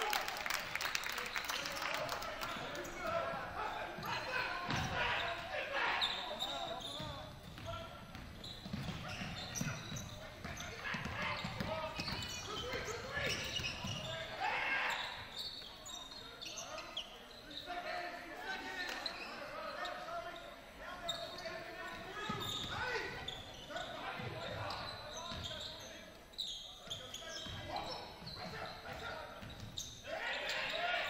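Basketball dribbled on a hardwood gym floor during live play, a run of low bounces, under indistinct shouting from players and spectators in a large, echoing gym.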